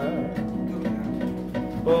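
Samba accompaniment of seven-string guitar, acoustic guitar and cavaquinho playing between sung lines, with a few light percussion hits; a man's singing voice comes back in near the end.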